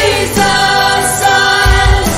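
Church worship team singing together with a live band, the voices holding long notes in a steady chorus. Deep drum beats come in near the end.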